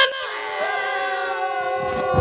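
A long held note made of several steady pitches, drifting slightly lower over time.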